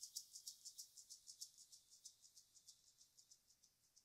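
Faint, rapid, evenly spaced ticking of high-pitched percussion, about six or seven ticks a second, fading away as the backing track ends.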